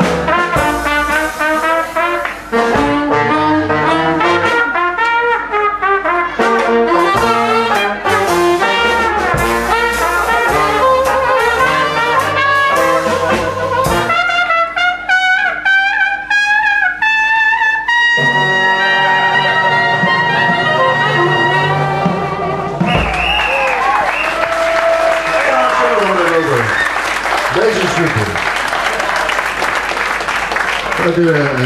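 Traditional jazz band with a lead trumpet playing an up-tempo number. About halfway through the trumpet climbs in a rising run into a long held final chord, and the tune ends about three-quarters of the way in, followed by audience applause.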